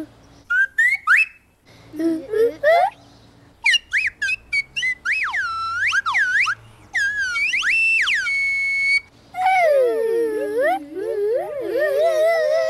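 Slide-whistle sounds made by voices and whistling: a string of swoops sliding up and down in pitch, some short and quick, one rising and held high about eight seconds in. Near the end a lower voice swoops down and back up.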